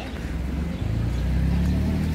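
A road vehicle's engine running close by, a low rumble that grows louder about a second in.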